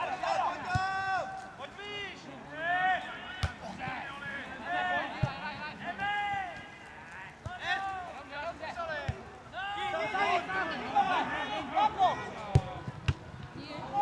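Football players shouting short calls to each other across the pitch, with several sharp thuds of the ball being kicked.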